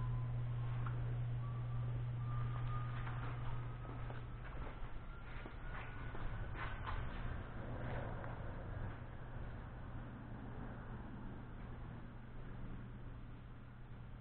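Hydraulic scissor lift lowering a car: a steady low hum with a faint whine that climbs slowly in pitch over the first several seconds. A few light clicks come around the middle, and the sound fades gradually toward the end.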